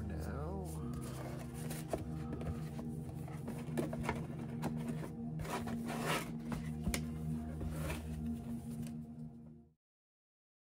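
Ambient electronic background music: sustained synth chords over a low drone, with a warbling glide in the first second. Packaging rustles and small knocks from handling sound over it, and the music cuts off abruptly near the end.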